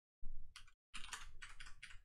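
Typing on a computer keyboard: a short burst of keystrokes, a brief pause, then a longer run of rapid keystrokes.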